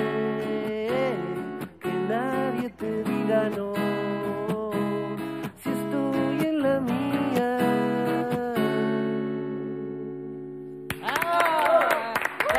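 Acoustic guitar played live, picked and strummed phrases closing a song, ending on a final chord left ringing that fades out about nine seconds in. About a second before the end, voices and clapping start.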